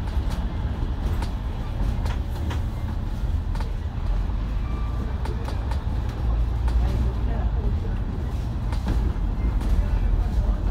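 Double-decker bus heard from inside the cabin while driving: a steady low engine and road rumble, with occasional short rattles from the bodywork.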